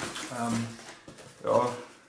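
A man's short hesitant filler syllables, with cardboard packaging rustling and sliding as a firework battery box is lifted out of a shipping carton.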